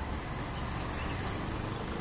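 Steady outdoor background noise: a low rumble with a faint hiss above it.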